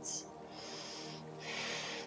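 Soft background music of steady held tones, with two audible breaths: one from about half a second in, and a second, shorter one near the end.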